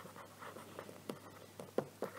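Stylus writing on a tablet: faint scratchy pen strokes, with a couple of sharper taps about a second in and near the end.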